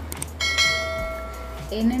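A single bell ding sound effect: one struck-bell tone that comes in sharply about half a second in and rings out over about a second, timed to a subscribe-and-notification-bell animation.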